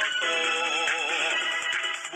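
A song in Tagalog, with a sung vocal line whose pitch wavers in vibrato over the instrumental backing.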